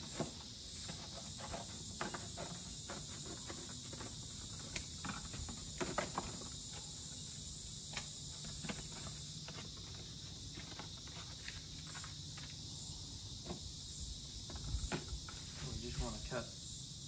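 Scissors snipping through thin cereal-box cardboard, with irregular clicks and rustles as the box is cut and handled. Insects trill steadily in the background.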